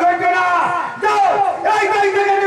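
A performer's loud, drawn-out vocal cries, held high notes whose pitch slides downward in the middle and then holds again.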